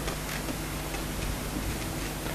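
Steady hiss and low electrical hum of an open audio line, with a few faint ticks.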